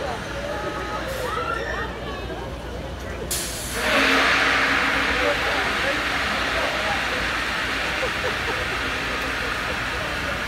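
Shore Shot pneumatic launch tower ride with riders seated at its base: about three seconds in, a sudden loud hiss of compressed air starts and holds steady. The air system is building up for the launch.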